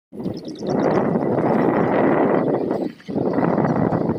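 Wind rushing over the microphone of a camera riding in a moving vehicle, a loud, steady roar that dips briefly just before the three-second mark. A quick run of high chirps sounds in the first second.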